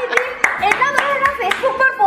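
A short round of hand clapping from a small group, mostly near the start, over voices talking.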